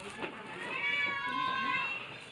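A high-pitched, drawn-out, slightly wavering cry, starting about half a second in and lasting about a second and a half.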